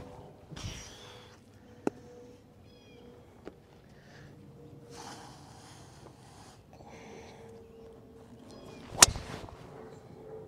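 A golf driver strikes a teed ball about nine seconds in: one sharp crack with a short ring, the loudest sound here. Near the start a practice swing swishes through the air.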